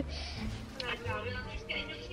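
A woman's voice talking faintly through a mobile phone's speaker.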